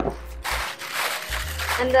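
A thin plastic bag rustling and crinkling as it is handled, from about half a second in, over background music with a repeating bass note.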